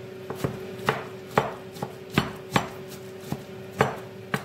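Chef's knife chopping vegetable pieces on a wooden cutting board: sharp, irregular knocks of the blade striking the board, about two a second.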